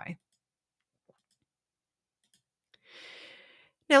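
A narrator's soft breath in, lasting about a second, just before she starts speaking again; before it there is near silence with one faint click.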